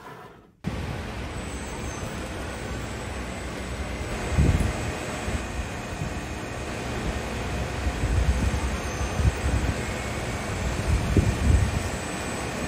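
A bank of electric fans running, blowing a steady rush of wind, with uneven low rumble from the airflow hitting the microphone. It starts suddenly under a second in.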